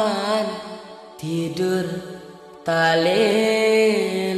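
Music from a slow dangdut song: a sustained, wavering melody line over a held low note, which thins out about a second in and comes back in full just before three seconds in.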